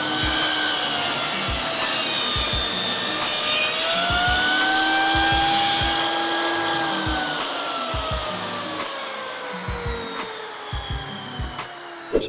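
Table saw cutting a taper into a wooden leg block held in a clamped sliding jig. The blade's whine dips in pitch as it bites into the wood, then recovers. Through the second half the pitch falls steadily and the sound fades as the blade winds down.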